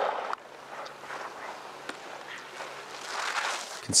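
Faint outdoor ambience from the ski course: a light hiss with a steady low hum underneath and a brief swell of noise near the end. A louder burst of noise at the very start cuts off suddenly.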